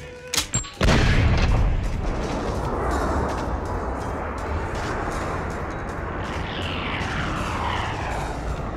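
A single-action revolver gives a couple of sharp metallic clicks, then fires once about a second in. The shot is drawn out into a long, deep, rumbling boom, with falling whooshes as the bullet travels, over film score.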